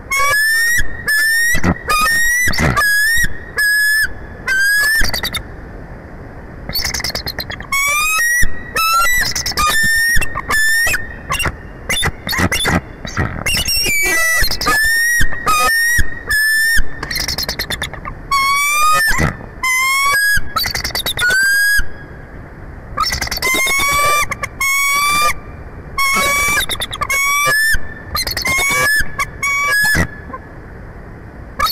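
A pair of bald eagles calling together: loud bouts of high-pitched, rapid piping chatter, each a quick run of short upward-sliding notes, broken by brief pauses. This is territorial alarm calling at an intruding immature bald eagle.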